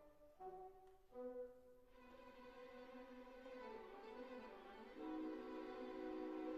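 Quiet, slow bowed-string music of held violin notes, growing louder with a sustained chord about five seconds in.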